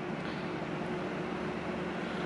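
Computer fans running, among them three unmounted GIM 120mm PWM case fans plugged into a running test PC: a steady whirring hiss with a faint low hum.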